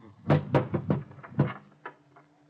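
Radio-drama sound effects of a scuffle over a telephone: a quick run of about seven sharp knocks and thuds over roughly a second and a half, dying away near the end.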